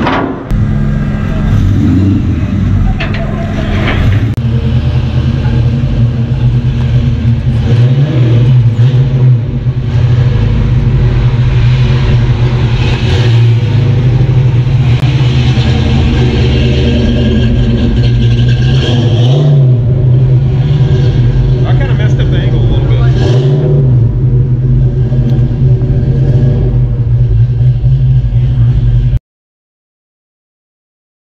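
Fox-body Ford Mustang engine running loudly at a steady idle, revved briefly three times, about a third of the way in, at about two thirds and shortly after; the sound cuts off abruptly near the end.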